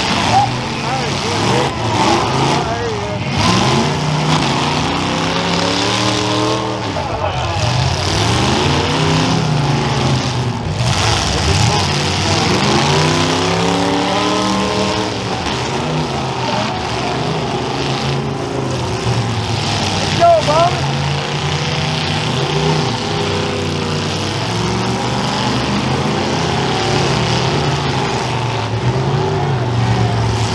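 Several demolition derby cars' engines running hard at once, revving up and down in long sweeps as the cars push against each other while locked together in a pile-up.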